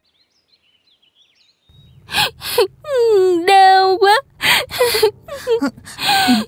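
Faint bird chirps over near silence, then from about two seconds in a woman moaning and gasping in pain: a few short gasps, a long wavering moan, then more short gasps and groans.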